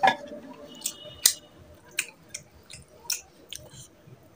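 Close-miked wet chewing of a mouthful of curry and rice, with irregular sharp lip smacks and clicks. The loudest smacks come at the very start and about a second in.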